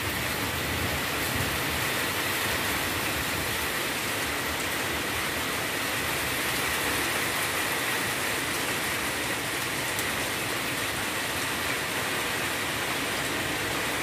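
Steady heavy rain falling, an even hiss that holds at one level throughout.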